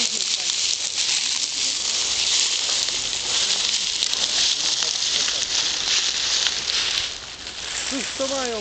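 A steady high hiss with faint scattered crackles, easing off about seven seconds in.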